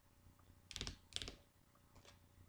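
Lenormand cards handled in the hands: two short bursts of card clicking and rustling, a little under a second in and again about a quarter second later.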